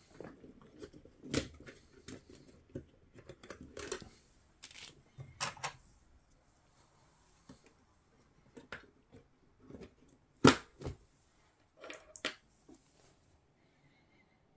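Hands swapping a DDR2 memory stick in a motherboard's RAM slot: scattered plastic clicks and knocks with handling noise between them. The loudest click comes about ten and a half seconds in, as the stick is pressed into the slot, and a few more follow about a second later.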